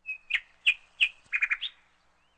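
A bird chirping: a short high whistle, then three sharp chirps about a third of a second apart, a quick run of three more, and a final rising note.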